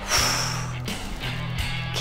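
Background music with a steady bass line. Near the start, a woman breathes out hard through her mouth in a breathy hiss lasting under a second, exhaling as she crunches.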